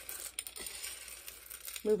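Dry pinto beans clicking and rattling as a hand stirs them and lets them drop back onto a plate, a few light clicks while the beans are sorted for split ones and stones.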